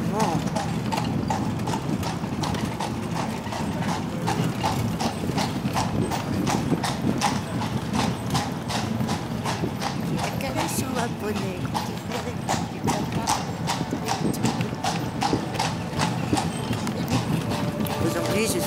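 A carriage horse's hooves clip-clopping on cobblestones in a steady, quick rhythm, over the low rumble of the carriage rolling along the cobbles.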